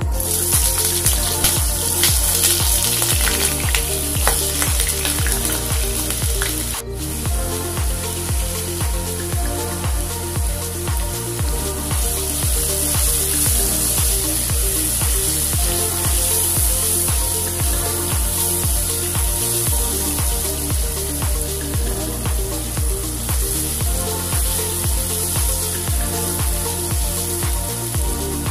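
Potato cubes frying in hot oil in a nonstick wok: a loud sizzle that starts suddenly as they go into the oil, with scraping as a spatula turns them. Background music with a steady beat plays under it.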